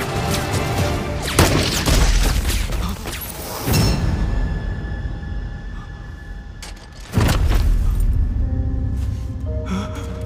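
Dramatic film score with three heavy booms, about one and a half, three and a half and seven seconds in. The last boom is followed by a long low rumble.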